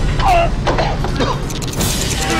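Layered horror-trailer sound effects: a steady low rumble under several short, wavering squeals and creaks, with sharp clicks scattered through.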